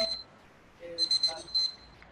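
Electronic alarm beeping: a quick burst of four short, high-pitched beeps about a second in, part of a repeating alarm-clock-style pattern.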